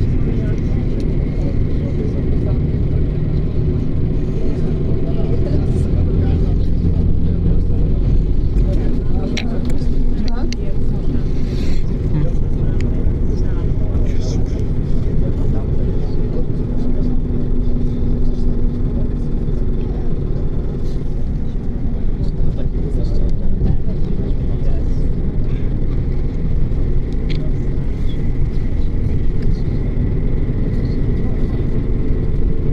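Interior cabin noise of a Mercedes-Benz 814D bus under way: the diesel engine's steady drone mixed with road and tyre noise, with a few brief rattles and clicks from the cabin.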